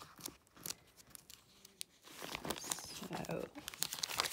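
Pages of a glossy paper catalogue being flipped and turned by hand: a run of quick rustles and crinkles that grows busier and louder about halfway through.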